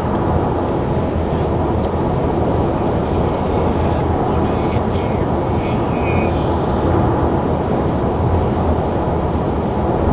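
Steady road and engine noise inside the cabin of a moving car.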